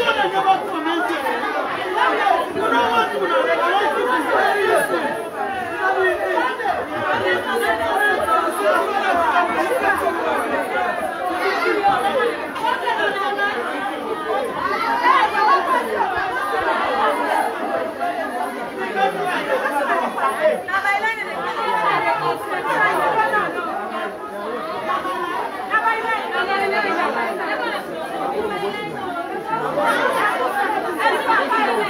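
Crowd of many people talking over one another in a packed room, a continuous babble of overlapping voices.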